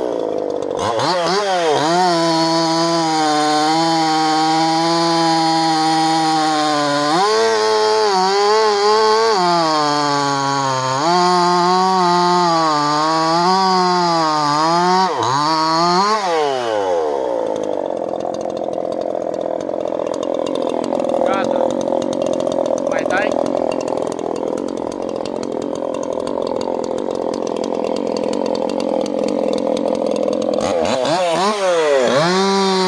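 Maruyama 5100S 50 cc two-stroke chainsaw with a modified muffler cutting through Turkey oak logs, its engine note wavering as it loads and recovers in the cut. About halfway through the revs fall away and the engine runs on at a lower, steadier idle.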